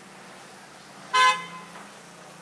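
A single short vehicle horn toot, about a third of a second long, a little past halfway through, over a faint steady low hum.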